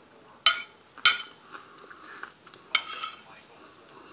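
Metal fork clinking against a dinner plate while food is picked up: three sharp, ringing clinks, two about half a second apart and a third a little later.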